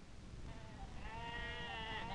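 A sheep bleating: one long, wavering call that starts faintly about half a second in and grows louder.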